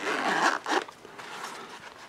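Zipper on a small camouflage fabric knife case being pulled open: a rasping run of about half a second, a second short pull just after, then fainter rustling of the case.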